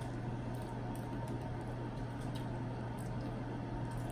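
Room tone: a steady low hum under a faint even background, with a few faint small clicks scattered through.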